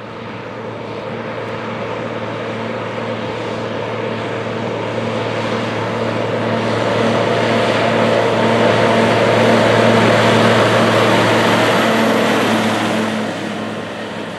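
A White 2-155 Field Boss tractor's diesel engine running steadily with tyre noise on pavement as it pulls a loaded gravity wagon down the road. It grows louder as it approaches, is loudest about ten seconds in as it passes close by, then begins to fade.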